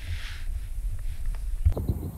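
Low, steady rumble of wind buffeting the camera's microphone, with a soft hiss just after the start and a single knock of handling shortly before the end.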